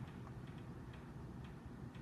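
Faint light ticks, a few of them at uneven spacing, over a low steady hum.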